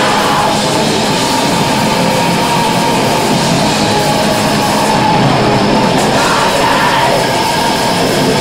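Live black metal band playing at full volume: distorted electric guitar, bass guitar and drums in a dense, unbroken wall of sound.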